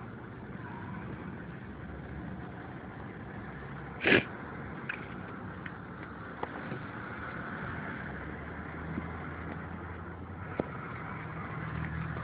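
Road traffic: cars passing and running on the street, a steady low rumble. One short, sharp bang about four seconds in stands out as the loudest sound, with a few faint clicks later.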